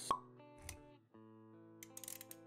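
Intro jingle of held musical notes with a sharp plop sound effect just after the start and a low thump a little later. The music drops out briefly around one second in, then comes back.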